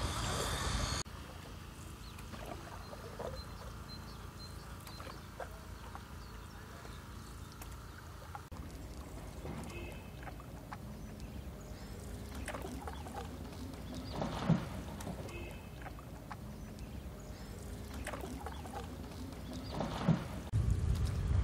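Canoe paddle strokes dipping quietly into calm river water, with soft splashes and drips and one sharper knock about fourteen seconds in. A louder noise cuts off abruptly about a second in.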